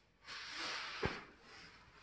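Faint rustling and breath-like hiss of a person shifting and rolling on foam floor mats, with one soft low thump about a second in.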